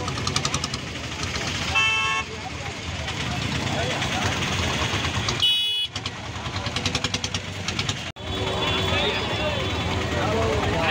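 Vehicle engines running in slow, congested traffic, with a horn sounding briefly about two seconds in and again around five and a half seconds in, over a background of people's voices.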